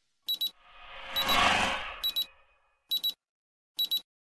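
Digital watch alarm beeping, a high-pitched double beep repeating a little less than once a second. A whooshing swell rises and fades about a second in.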